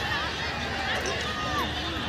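Chatter of several people talking at once in the background, with no single voice in front.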